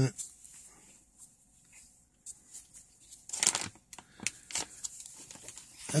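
Quiet rustling and scraping of cardboard coin flips being handled, with a louder rustle about three and a half seconds in and a couple of smaller ones after it.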